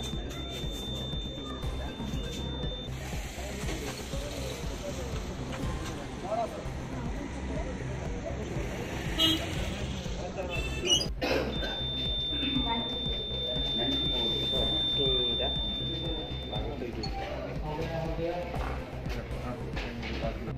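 Murmur of many people talking while they stand in a queue, with a steady high-pitched electronic beep heard twice: once briefly at the start and once for about five seconds midway.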